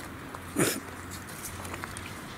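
A dog barking once: a single short, sharp bark about half a second in.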